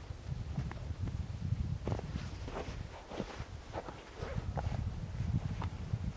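Footsteps and shuffling in snow close to the microphone: irregular soft crunches over a low rumble.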